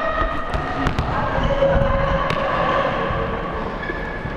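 Basketball bouncing on a hardwood gym floor: a handful of sharp, irregularly spaced thuds.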